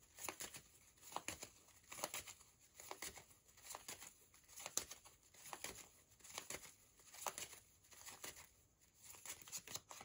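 A deck of tarot cards being shuffled by hand: quiet, short rustles and slaps of card on card, recurring about once a second.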